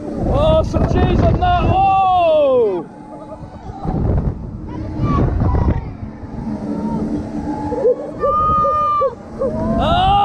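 Riders screaming and yelling on a swinging, spinning pendulum flat ride, their cries rising and falling in pitch in two bursts. Wind buffets the microphone in surges as the ride swings.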